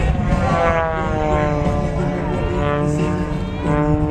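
Aerobatic propeller plane's engine buzzing overhead, its pitch sliding slowly downward for about three seconds and then holding steady.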